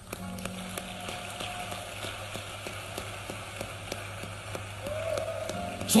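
Scattered applause from a large church congregation, a soft even patter of claps, with a low steady tone held underneath.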